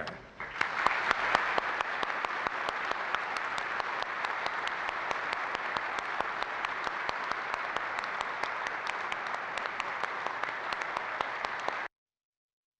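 Congregation applauding: dense, steady clapping that builds about half a second in and cuts off abruptly near the end.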